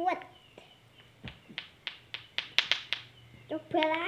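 Lato-lato clacker toy, two hard balls on a string knocking together: a series of sharp clacks that starts about a second in and comes faster and faster, up to about six a second, then stops shortly before the end.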